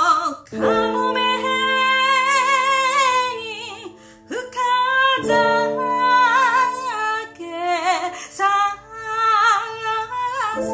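Enka ballad sung in long phrases with wide vibrato over the singer's own piano accompaniment of sustained chords. The voice pauses briefly about four seconds in before the next phrase.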